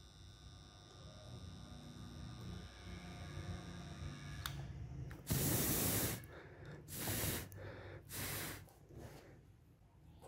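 Three puffs of breath blown onto a freshly soldered wire joint on a 9 V battery terminal. The first, about five seconds in, is the longest and loudest, and two shorter puffs follow about a second apart. Before them there is only faint handling and a small click.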